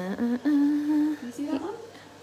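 A woman's voice humming: a short held note of under a second in the middle, with brief voiced sounds just before it.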